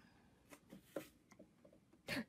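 Near silence, broken by a few faint taps of a stylus on a sewing machine's touchscreen.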